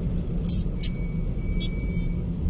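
Steady low rumble of a car driving in traffic, the engine and tyre noise heard from inside the car. Two short high hisses come about half a second and just under a second in, followed by a thin, steady high-pitched tone.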